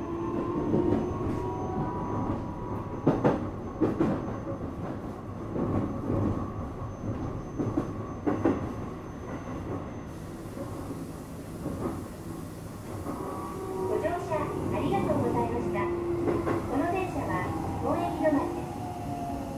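Interior running sound of a Keikyu 1000-series electric train: steady motor whine over wheel and track rumble, with a few sharp clicks over rail joints in the first half. The tones come back with a waver near the end as the train draws into the terminus.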